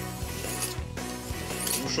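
Steel knife blade stroked by hand across a sharpening stone in the finishing stage, short gritty rubbing strokes about once a second, the stone loaded with a slurry of metal and grit. Background music plays under it.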